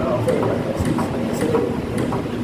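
Chest compressions on a CPR training manikin, each push giving a short click, about two a second in a steady rhythm.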